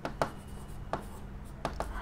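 A stylus writing on an interactive touchscreen board: about five sharp taps and ticks in two seconds as the pen tip meets the screen, over a faint steady hum.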